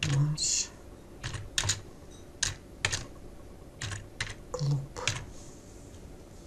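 Slow, uneven typing on a computer keyboard, single keystrokes and quick pairs clicking a few at a time as a short phrase is entered.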